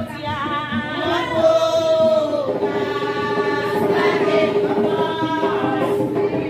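A group of voices singing a Vodou ceremonial song together, with a held note that drops about two seconds in and then carries on steady.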